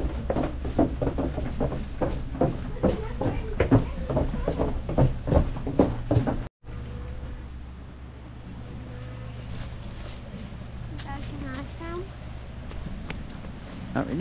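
Footsteps knocking on the wooden boards of a covered walkway, several a second, over a steady low hum. It cuts off about six and a half seconds in to a quieter outdoor background with the same hum.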